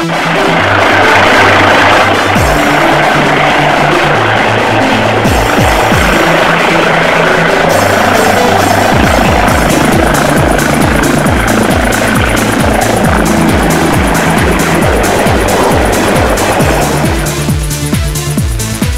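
Air ambulance helicopter, a Eurocopter EC135, running with a loud steady turbine and rotor noise, heard under electronic dance music with a steady beat. The helicopter noise fades out shortly before the end, leaving the music.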